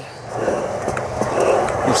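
Skateboard wheels rolling on concrete: a rough rumble that builds about half a second in and holds, with a single sharp click near the middle.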